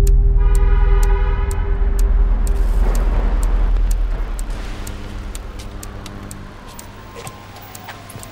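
Trailer sound design: a deep bass boom opens into a heavy low drone with a held tone, under a steady ticking about twice a second. The drone fades after about four seconds, leaving the ticks and a faint falling tone.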